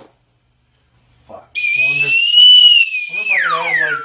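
A loud, high whistling tone that starts about a second and a half in, holds fairly steady, then glides steeply down in pitch near the end, with a lower voice-like sound beneath it.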